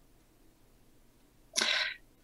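Near silence, then near the end a single short, sharp breath noise from a person, about half a second long.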